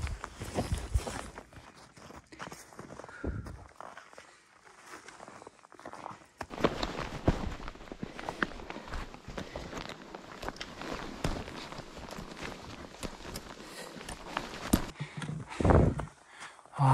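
Footsteps of hiking boots in fresh snow, an irregular series of steps, with a louder short sound just before the end.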